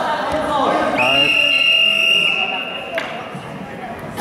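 A referee's whistle blown in one long, steady blast of about two seconds, stopping the wrestling bout; voices in the hall just before it.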